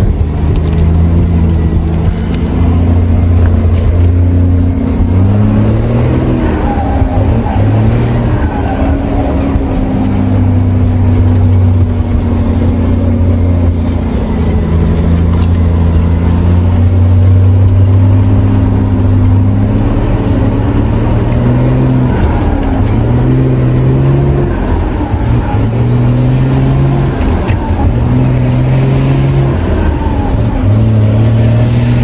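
Volkswagen truck's diesel engine heard from inside the cab while driving. Its note climbs and drops with each gear change, holds steady for a stretch in the middle, then rises and falls through the gears again near the end.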